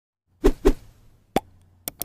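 Cartoon pop sound effects from an animated logo intro: two quick loud pops about half a second in, a sharper pop a little later, then two faint clicks near the end.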